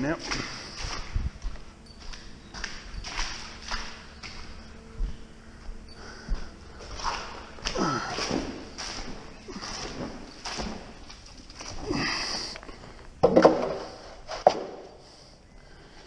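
Scattered knocks and handling noises with low mumbling and breathing as a petrol power screed is got ready on wet concrete, with two louder knocks near the end. The screed's small engine is not running.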